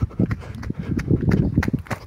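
Hurried footsteps across grass and paving, heard as a fast, uneven run of low thumps and clicks close to the microphone.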